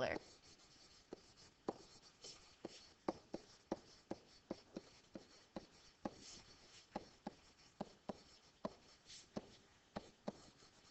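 Stylus writing on a digital writing surface: faint, irregular taps and short scratches of the pen tip as each handwritten stroke is made, about two a second.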